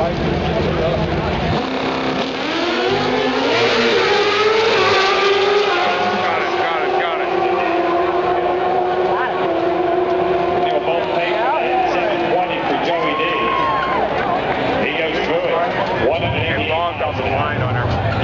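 A pair of Pro Stock drag-racing motorcycles launching from the starting line about two seconds in and running hard down the strip, their engine pitch climbing in steps as they shift up through the gears, then drawing away.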